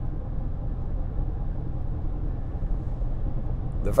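Steady low rumble of a car in motion, heard from inside the cabin.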